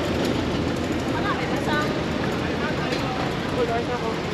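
Busy street ambience: a steady hum of traffic with passers-by's voices in the background.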